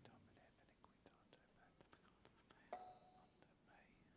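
Near silence: faint whispering and small clicks from handling vessels at the altar, with one sharp clink about three quarters of the way through.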